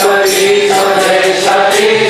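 Devotional chanting sung to a slow melody of long held notes, with small hand cymbals keeping a steady beat.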